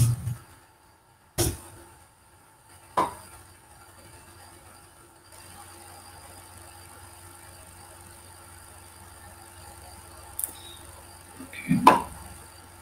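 A few sharp clicks over a faint, steady low hum: two clicks in the first three seconds and a smaller one near the end.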